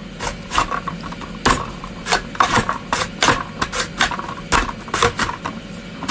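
Potato slices being pushed through the dicing grid of a push-down mandoline vegetable chopper: a run of short, irregular scraping strokes, two or three a second, as the blades cut the potato into small cubes.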